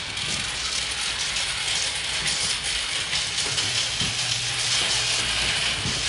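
Steady hissing whir with a faint low hum, from the running mechanisms of a homemade light-projecting keyboard instrument as it throws moving light patterns.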